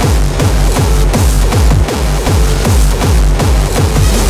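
Fast industrial hardcore electronic music: a heavy kick drum hits several times a second, each hit falling in pitch, under dense, noisy synth layers.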